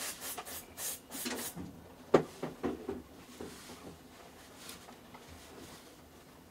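White cotton gloves rubbing against a small camera teleconverter while it is turned in the hands: a run of short brushing strokes in the first second and a half, then a sharp knock about two seconds in, followed by a few softer clicks and quieter handling.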